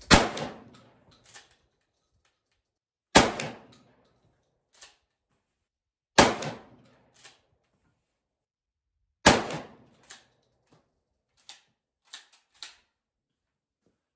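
Four 12-gauge shotgun slug shots fired about three seconds apart, each with a short echo, and a few faint clicks between them.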